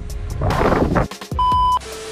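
Background music with a beat, then a short burst of noise about half a second in, a brief cut to silence, and a steady high-pitched test-tone beep lasting about half a second: the tone that goes with a TV colour-bar test pattern, used here as an editing transition.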